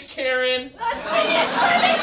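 A woman's short, held cry of strain, followed by overlapping voices and chatter.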